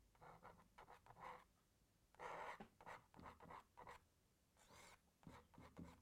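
Palette knife scraping thin tree limbs into wet oil paint on a canvas: a string of short, faint scratching strokes with pauses between them.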